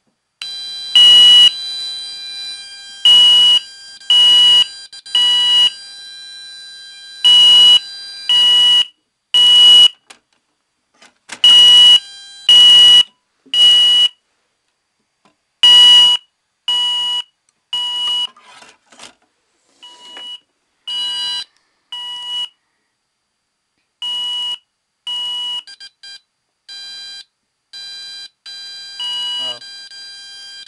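Roshni fire alarm sounder on the American Code-3 temporal pattern: loud beeps in groups of three, about a second apart, each group starting roughly every four seconds, over a fainter steady tone. In the second half the beeps are quieter and less regular.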